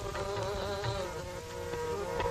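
Instrumental passage of Punjabi folk music: buzzy, reedy held notes over a steady drone, with a wavering melody line in the first second and light percussion strokes.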